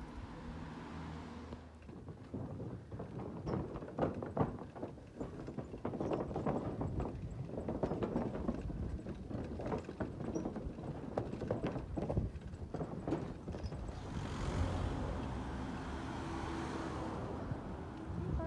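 Bicycle wheels rolling over the boards of a wooden plank bridge, giving a dense, irregular clatter of knocks and rattles. Near the end it gives way to a steady rushing hiss.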